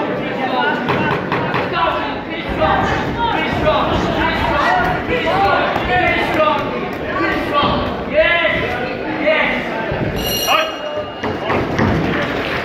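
Cornermen and spectators shouting over each other at a K1 kickboxing bout, with thuds of kicks and punches landing. About ten seconds in there is a brief high-pitched ring.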